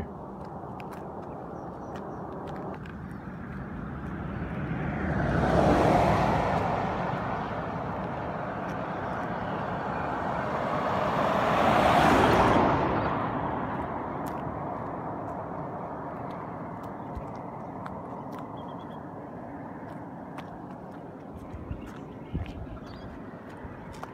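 Two road vehicles pass close by, the first about a quarter of the way in and the second about halfway. Each brings a rush of tyre and engine noise that swells and fades over a few seconds, with a steady low road noise in between.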